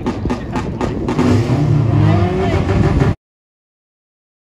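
Wind buffeting the microphone over a car engine running and people's voices. The sound cuts off abruptly about three seconds in.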